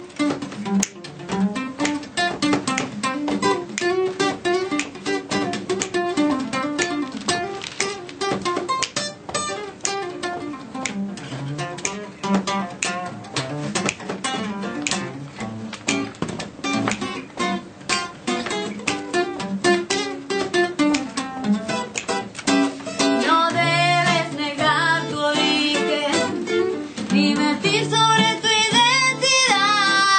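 Acoustic guitar played live, a blues accompaniment of steady picked and strummed chords. About twenty-three seconds in, a woman's voice starts singing over the guitar.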